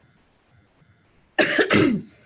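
A woman coughs twice in quick succession, about one and a half seconds in.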